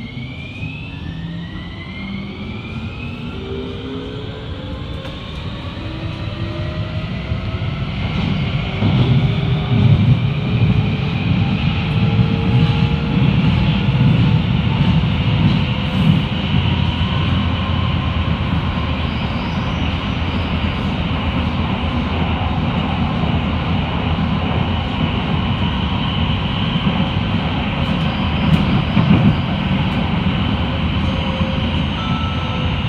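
Amsterdam metro train accelerating away from an underground station, heard from inside the carriage: the electric traction motors give several whining tones that rise in pitch over the first several seconds. From about eight seconds in, the train runs at speed through the tunnel with a louder, steady rumble of wheels on rails.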